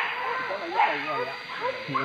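Hunting dogs barking and yelping in the undergrowth while on a wild boar, in a run of short cries that bend in pitch, mixed with men's distant shouts.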